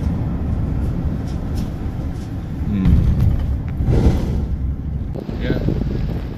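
Steady low road and engine rumble inside a moving vehicle's cabin, louder for a moment about three to four seconds in.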